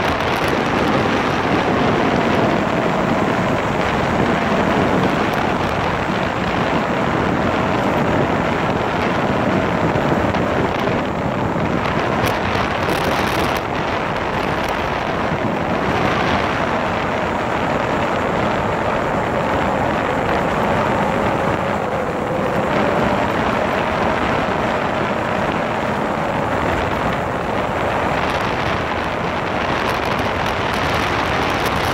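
Motorcycle riding at a steady pace: loud, steady wind rushing over the microphone, with the engine's note faintly underneath, drifting slowly up and down in pitch.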